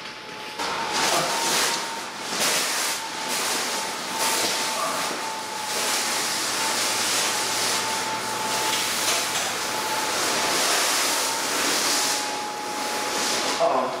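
Battery-powered blower fan of an inflatable T-Rex costume switching on about half a second in, then running steadily with a rush of air and a steady whine as it keeps the costume inflated.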